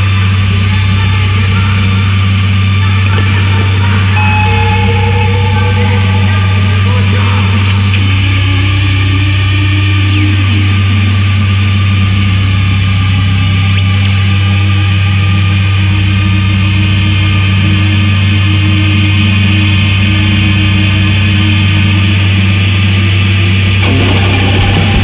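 Noise-music drone from an electric guitar run through effects pedals and electronics: a loud, steady low hum with sustained tones that come and go at changing pitches over it.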